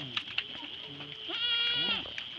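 A goat bleats once near the end, a single steady call held for about half a second, with fainter low calls from the herd before it.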